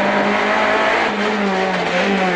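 Renault Clio Williams FN3 rally car's 2.0-litre four-cylinder engine heard from inside the cabin, running hard at a steady pitch that sags slightly near the end, over a constant hiss.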